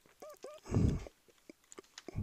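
Soft mouth noises and a short breath close to the microphone in a pause between spoken phrases, followed by a few faint clicks.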